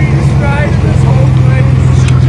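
A motor vehicle engine running steadily, a loud, even low hum, with faint voices over it.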